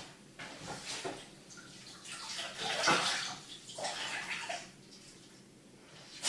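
Kitchen tap running into a sink, water splashing unevenly as the chopping board is put in to soak, then turned off about five seconds in.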